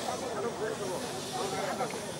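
A pause in women's amplified singing: a steady hiss with faint voices underneath.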